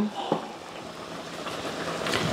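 Faint, steady kitchen background noise with a single light knock about a third of a second in, like an item being handled on the counter.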